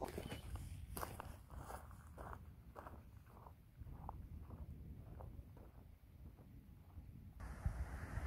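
Footsteps on dry grass and loose stones, about two a second, growing fainter as the walker moves away.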